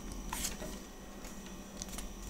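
Faint handling of Pokémon trading cards: cardstock sliding and rustling between fingers, with a couple of soft clicks, over a low steady hum.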